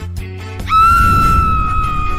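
Background music with a high-pitched squeal that rises sharply about two-thirds of a second in and is then held on one steady pitch.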